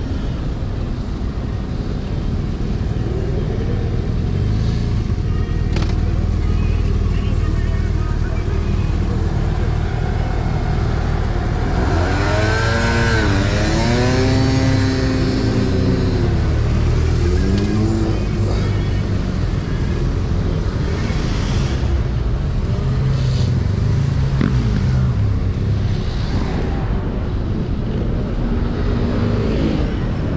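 Busy city street traffic heard from a bicycle riding among it: a steady low rumble of car and motorcycle engines. Around the middle, a pitched sound rises and falls for a few seconds.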